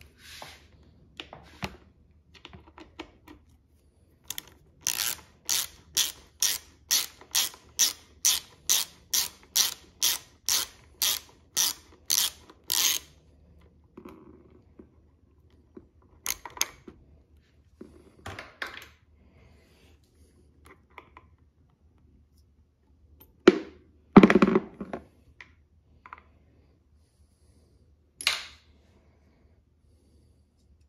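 Ratcheting wrench turning the banjo bolt on a motorcycle's front brake master cylinder: a steady run of ratchet clicks, about two a second, for some eight seconds, then scattered tool clicks and two louder knocks near the end.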